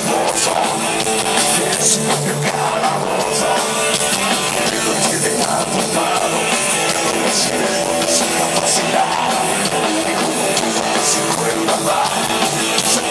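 Live rock band playing loud and steady, electric guitars and a drum kit with repeated cymbal crashes, heard from the audience.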